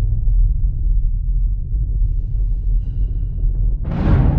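Cinematic logo-sting sound design: a deep, steady rumble carries through, then a sudden rising whoosh hits just before the end.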